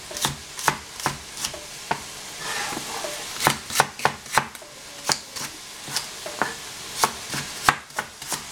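A cleaver chopping celery stalks on a plastic cutting board: a sharp knock with each stroke, about two a second, with a short pause a couple of seconds in.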